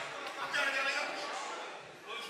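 People's voices talking around a grappling match.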